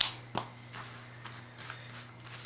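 A sharp plastic click as the felt-tip marker is put down, a softer knock a moment later, then faint rustling of playing cards being slid about on carpet.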